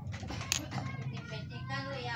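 Voices talking in the background, children's among them, over a low steady hum, with one sharp click about half a second in.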